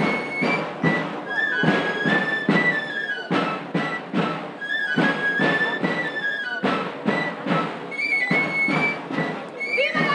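Three-hole pipe and tamboril drum played together: a high, shrill melody in short stepping notes over a steady drumbeat, a traditional Andalusian dance tune.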